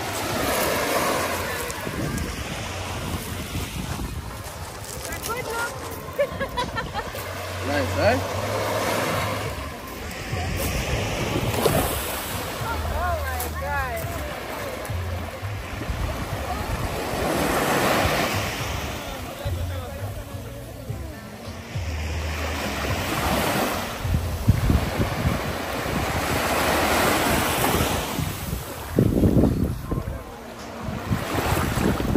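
Small waves washing up the sand and drawing back, swelling and fading every few seconds, with wind buffeting the microphone.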